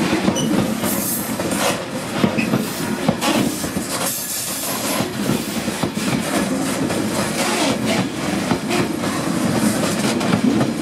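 Freight train wagons rolling past, their wheels clicking and clattering over rail joints in a steady run.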